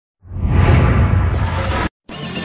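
Whooshing intro sound effect over a deep rumble. It swells in, turns brighter a little past halfway, then cuts off suddenly.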